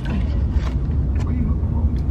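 Steady low road and engine rumble inside a moving car's cabin, with faint voices over it.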